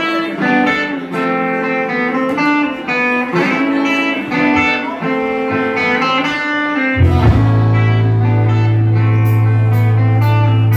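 Live rock band's song intro: electric guitar picking a riff of single notes, with a bass guitar coming in on a long held low note about seven seconds in.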